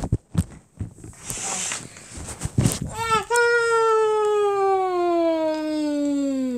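Clicks and rustling from the microphone being handled. About halfway through, a child's voice holds one long note for about three seconds, slowly falling in pitch.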